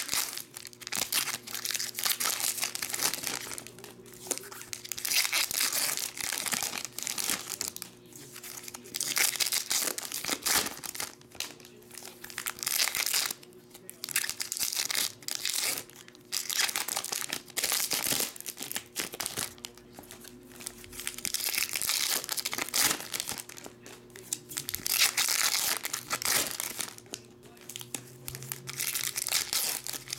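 Foil trading card packs being torn open and crinkled in the hands, in irregular bursts of crinkling that run on through the whole stretch.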